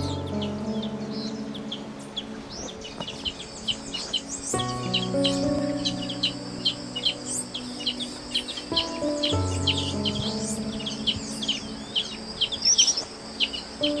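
A busy chorus of many small birds chirping and calling, high-pitched and nearly continuous, over soft background music of long held chords that change about every four to five seconds.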